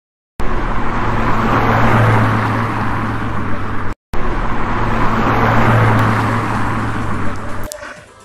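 Logo intro sound effect: a loud rushing noise over a steady low hum, the same clip of about three and a half seconds played twice with a brief silent cut between. It fades out near the end.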